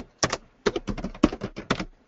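Computer keyboard typing: a quick, uneven run of a dozen or so keystrokes that stops just before the end.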